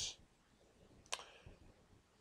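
A single short click about a second into a near-silent pause.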